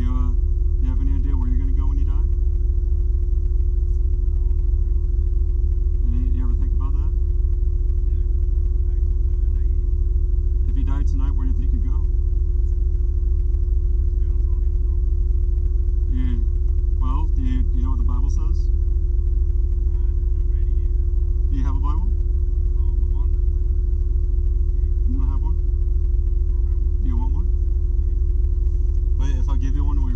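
Steady low rumble of a car idling, with a constant hum over it and indistinct voices coming through now and then.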